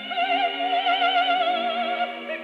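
Operatic music from a 1931 electrical gramophone disc, thin and narrow in range: a high melody note is held with a wide, even vibrato over steady lower chords, and falls away just before the end.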